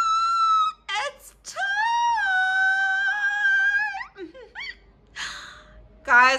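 A woman's high-pitched excited squeals: a held squeal ends early, a longer one is held for over two seconds, then come short rising squeaks and a breathy exhale.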